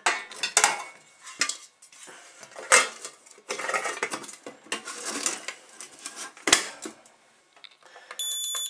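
Stainless steel US Army mess kit clinking and scraping as its pan and plate are pressed together and the folding handle is worked, with a string of sharp metal knocks, two of them louder.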